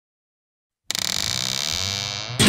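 A buzzing electronic sound effect from an animated title intro, cutting in suddenly about a second in: a steady buzz with a sweeping, swirling tone running through it.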